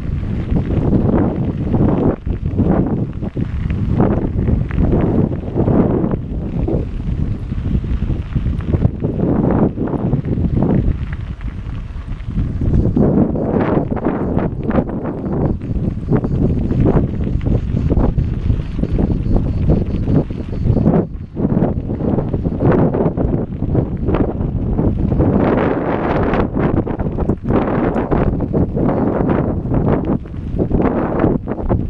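Wind buffeting the microphone of a camera riding on a moving mountain bike, a loud low rumble throughout, with frequent knocks and rattles as the bike jolts over a rough dirt track.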